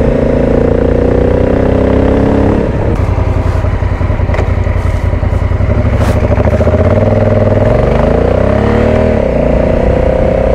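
Adventure motorcycle's engine running on the road, its pitch climbing under throttle, dropping sharply about three seconds in, then rising and falling again near the end, with a few light clicks along the way.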